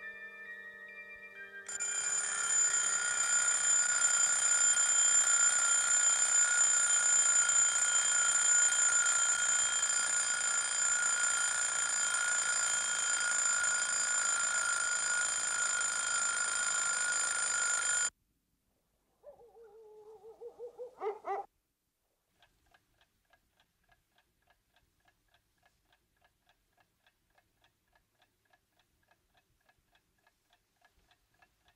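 A bell ringing continuously and loudly for about sixteen seconds, then cutting off abruptly. After a short pause and a brief rising warble, a clock ticks steadily at a little over two ticks a second.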